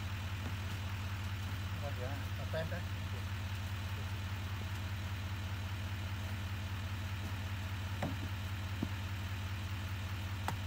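Chevrolet Silverado HD pickup's engine idling, a steady low drone. Faint voices come in briefly about two seconds in, and a couple of light clicks come near the end.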